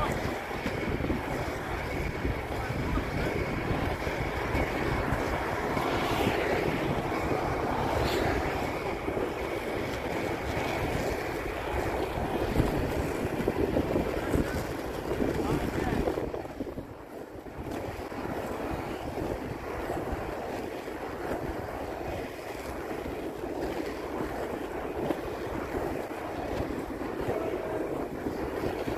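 Wind buffeting the phone's microphone over the rumble of inline skate wheels rolling on asphalt, with a brief lull a little past halfway.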